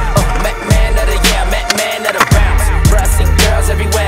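Hip-hop beat with a deep sliding bass, mixed with skateboard wheels rolling on concrete and the board hitting the ground.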